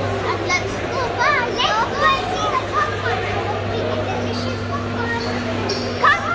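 Children's voices and crowd chatter, several high-pitched voices at once, over a steady low hum.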